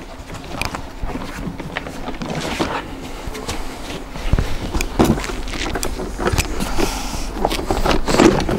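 Scattered clicks, knocks and rustling as plastic infant car seats are unclipped and lifted off the adapters of an UPPAbaby Vista stroller, with a few louder knocks in the second half and some footsteps.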